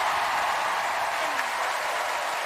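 Studio audience and judges applauding, a steady, dense clapping.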